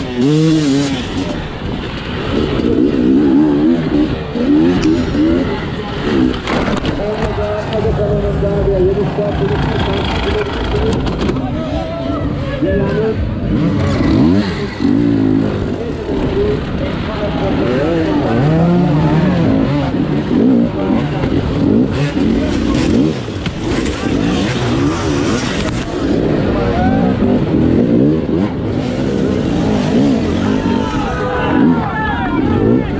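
Two-stroke enduro motorcycle engine at race pace, its pitch rising and falling constantly as the throttle is opened and shut.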